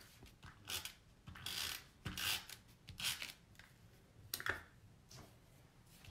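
Soft rustles and scrapes of hands handling cardstock and a loop of twine on a tabletop, in several short, faint bursts.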